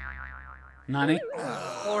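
Cartoon 'boing'-style sound effect with a rapidly wobbling, warbling pitch, starting about a second in, as the anime character sprouts horns after drinking a poison. A fading wavering tone comes first.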